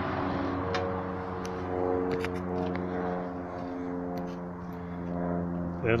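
A motor running steadily at idle, a constant low hum with a few faint clicks in the first couple of seconds.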